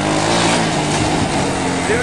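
Small off-road three-wheeler engine revving under load, its pitch rising briefly and then easing down to a steady drone.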